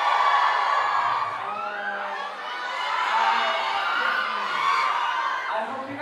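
A crowd of fans screaming and cheering, many high voices at once, swelling and easing a few times.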